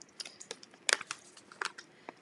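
Plastic bag of glitter crinkling as it is handled and tipped for pouring: a run of irregular sharp crackles, loudest about a second in.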